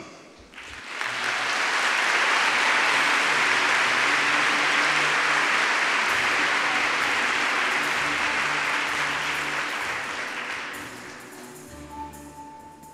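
Audience applauding, starting about a second in and fading away near the end, with background music of held low notes underneath.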